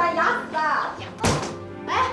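A single dull thunk about a second and a quarter in, over background music and a woman's speech.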